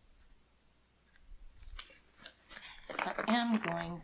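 Scissors snipping sticker paper: a short run of quick, sharp cuts in the middle, then a woman's voice starts to speak near the end.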